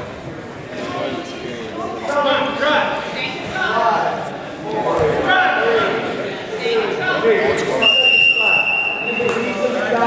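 Coaches and spectators shouting during a wrestling bout in a gym. About eight seconds in, a steady high-pitched signal tone sounds for about a second and a half, stopping the wrestling as the period clock runs out.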